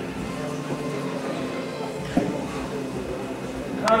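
Low background murmur of voices and room noise, with a short knock about two seconds in.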